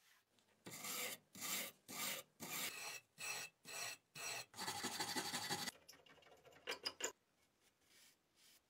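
Brass wire brush scrubbing rust off a corroded knife blade, in about nine short back-and-forth scraping strokes followed by one longer continuous scrub lasting about a second. A few short sharp clicks follow near the end.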